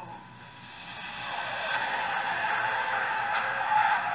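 Horror film trailer sound design: a noisy, whooshing swell that builds over the first two seconds and then holds.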